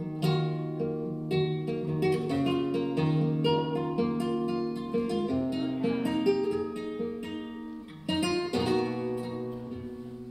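Solo flamenco guitar playing plucked melodic phrases over ringing bass notes, with a few strummed chords, the strongest about eight seconds in.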